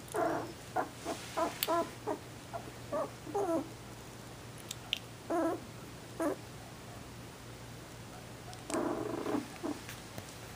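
Shetland sheepdog puppies whimpering and squeaking in short, pitched calls: a quick run of them over the first few seconds, a couple more in the middle, and a longer cluster near the end.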